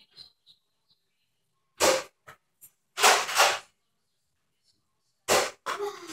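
Nerf N-Strike Longshot CS-6 spring-powered dart blaster being worked and fired: a few separate sharp clacks, about two seconds in and again near the end, with a short noisy burst of air about three seconds in.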